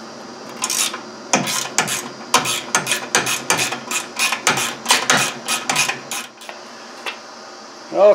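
Ratcheting wrench clicking in quick runs as a bolt is turned, one burst of clicks per stroke of the handle, stopping about six seconds in.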